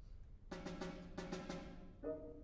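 Near silence, then about half a second in a snare drum and a piano start together: a run of quick, crisp snare strokes over a held piano chord, opening a movement after a pause.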